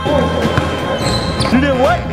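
A basketball bouncing on a gym floor with voices, over background music with a steady bass beat.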